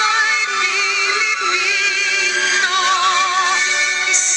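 Song playing: a sung melody held on long notes with a wide vibrato over backing instruments, the voice sounding electronically processed.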